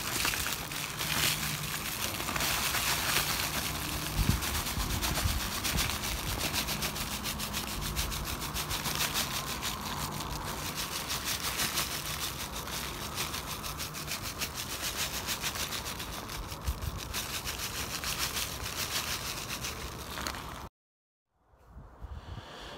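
A steady rushing hiss from the outdoor burner heating a cast iron Dutch oven, running turned down low. It cuts off abruptly near the end.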